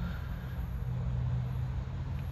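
Steady low mechanical hum of a running motor or engine, even and unchanging.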